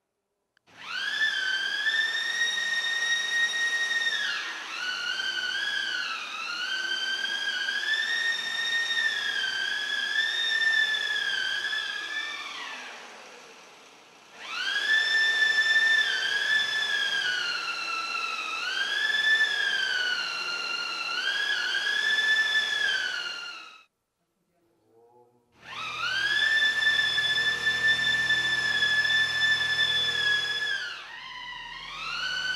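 High, whistle-like electronic tone from a computer patch driven by an EEG brain-wave headset, its pitch wavering and bending as the readings change. It comes in three long stretches with short gaps between them: the first fades away near the middle, the second cuts off suddenly, and the third starts a couple of seconds later.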